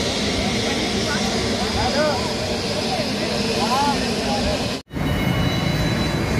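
Steady jet aircraft noise around an airport runway, with people's voices rising and falling over it. Just before the end the sound cuts out abruptly and comes back as a low-flying airliner's engine noise, with a steady high whine in it.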